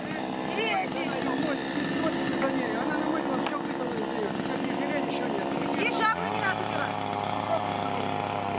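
A chainsaw engine runs steadily, then revs up about six seconds in and is held at the higher pitch.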